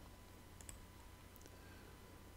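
Near silence with a faint steady hum, broken by a few faint computer mouse clicks in the middle.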